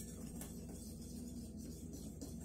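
A whisk stirring dry flour, yeast, sugar and salt in a glass Pyrex mixing bowl, mixing the dry ingredients for pizza dough: faint, steady whisking.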